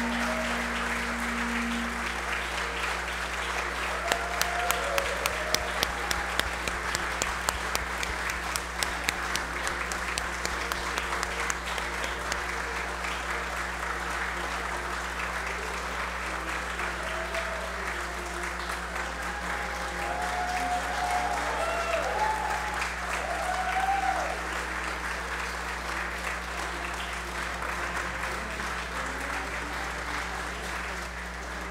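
Sustained applause from a large standing audience in a hall. From about four seconds in to about twelve, a run of sharp, louder claps sounds about twice a second.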